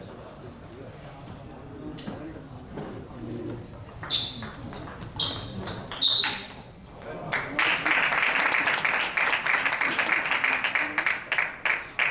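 Table tennis rally: a celluloid ball clicking off bats and table, three sharp hits about a second apart, followed by spectators applauding the point, about halfway through, loud and lasting to the end.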